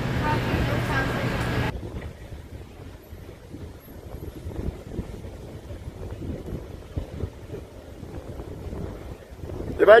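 Outdoor ambience of wind buffeting a phone microphone. A steady low hum lasts the first couple of seconds and cuts off suddenly, leaving a quieter, uneven wind rumble. A man's voice comes in right at the end.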